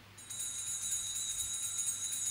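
Altar bells shaken in a steady jingling ring, starting about a quarter second in, marking the elevation of the consecrated host.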